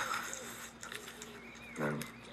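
A cork squeaking in a glass bottle's neck as it is twisted and worked loose: a series of short, faint squeaks that slide up and down in pitch.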